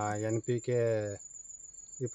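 A man talks for about the first second, then pauses. Under the voice runs a steady high-pitched drone of crickets.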